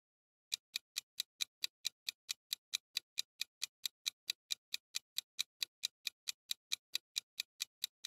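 Clock-ticking sound effect marking a countdown timer: even, rapid ticks, about four and a half a second, starting half a second in.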